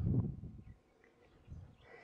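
A short low rush of noise on the microphone in the first half-second, then near quiet.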